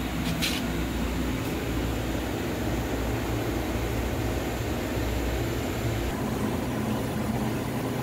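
Steady hum of aquarium equipment running in a fish room: a constant low drone under an even hiss, with a brief click about half a second in.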